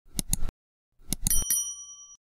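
Subscribe-button animation sound effects: a couple of quick mouse clicks, then after a short gap more clicks and a bright bell ding that rings on for about half a second.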